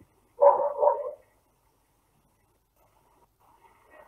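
A short vocal sound, under a second long, about half a second in.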